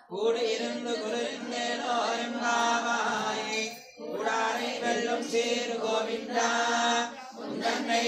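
A male voice chanting a devotional hymn during temple aarti worship, in long sustained sung lines that pause for breath about four seconds in and again about seven seconds in.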